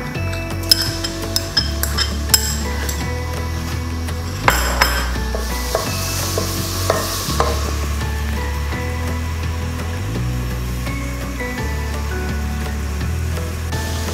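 Onions and garlic paste sizzling in hot oil in an aluminium pressure-cooker pot, stirred with a wooden spoon that knocks against the pot several times in the first few seconds. Background music with a steady bass line plays throughout.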